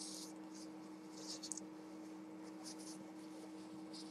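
Dry tissue rubbed across the lips to wipe off lipstick: a few short, faint papery rustling strokes, the loudest about a second and a half in, over a steady low hum.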